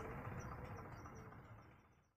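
Faint outdoor background with a run of small, high chirps, fading out to silence near the end.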